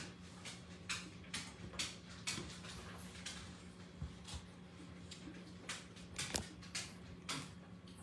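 Small, scattered clicks and rustles of people eating at a table: chewing, a paper napkin being handled and a spoon set down on a plate, over a steady low hum.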